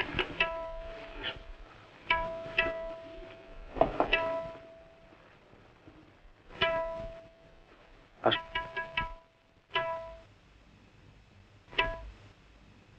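Sparse film background score of pizzicato strings: short groups of plucked notes, mostly on the same pitch and left to ring briefly, separated by pauses of a second or more.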